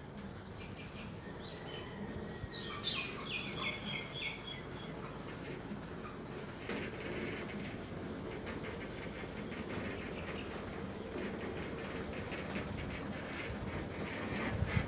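A bird calling a short run of quick repeated chirps about three seconds in, over steady outdoor background noise.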